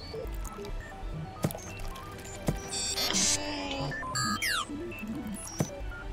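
Cartoon background music with sound effects layered over it: a soft squishy pouring sound and quick electronic beeps and chirps from cartoon robots.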